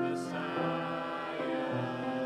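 A small mixed vocal group of men and women singing in harmony with upright piano accompaniment, holding long notes that change about every second.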